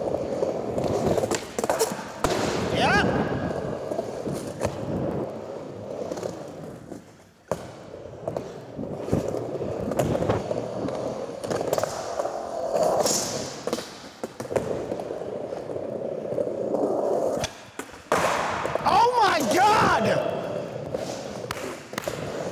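Skateboard wheels rolling over wooden ramps, broken by several sharp clacks of board pops and landings. The rolling drops away briefly about seven seconds in, then a loud clack follows.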